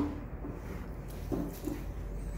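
Electric potter's wheel spinning with a steady low hum while hands shape wet clay, with a short sharp sound right at the start and a couple of brief murmurs about one and a half seconds in.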